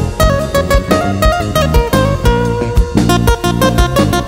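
Instrumental break in an Andean huayno-style band song: a guitar picks the lead melody in quick notes over bass and a steady percussion beat.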